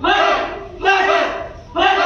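A group of karate students shouting kiai ("hey!") together in unison with each punch: three loud shouts, a little under a second apart, each dying away before the next.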